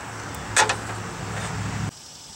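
A steady low hum with a single sharp click about half a second in; the hum cuts off abruptly just before the end.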